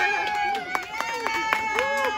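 A small family group clapping and cheering a toddler's cake smash, with one long high-pitched held cheer running throughout and excited voices underneath.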